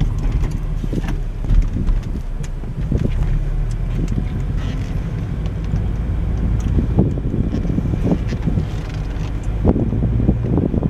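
Steady low rumble of a car driving slowly, heard from inside the cabin, with a few light knocks.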